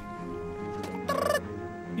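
A small cartoon creature's short, rapid chattering call, gobble-like, lasting about half a second and coming about a second in, over steady background music.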